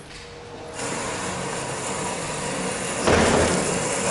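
A canister vacuum cleaner on a test rig switches on about a second in and runs with a steady rushing noise. A louder rush rises near the end as the rig starts to pull it.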